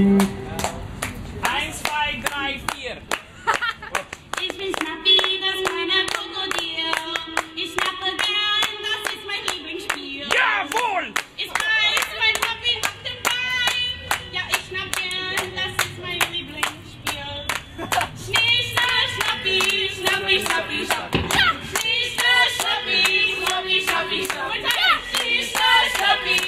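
A small crowd clapping along in a steady rhythm to a live song, with singing voices and a strummed electric guitar under the claps.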